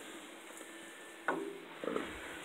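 Pot of pork fat rendering into lard, bubbling faintly while a wooden spoon stirs it. It is at about 250°F, with the water nearly all cooked out.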